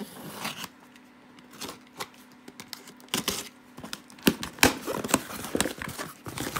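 Packing tape being torn off a cardboard box and the cardboard flaps pulled open: sharp rips and scrapes, a few at first, then a thicker, louder run in the second half.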